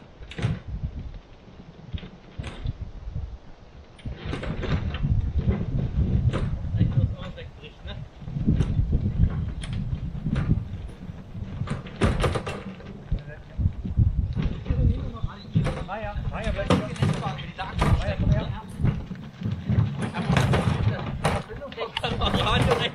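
Canoes on wheeled portage carts pushed over bare rock and tree roots: wheels rumbling with many knocks and rattles from the carts and hulls. It gets louder from about four seconds in as they approach, with people's voices among it.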